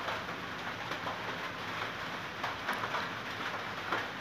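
Steady background noise with a few faint ticks, with no clear source beyond the recording's own room noise.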